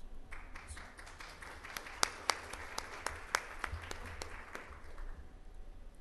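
Audience applauding, starting just after the beginning and dying away about five seconds in, with a few single claps standing out.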